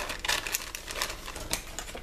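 Packaging being handled: a quick, irregular run of crackles, crinkles and small clicks.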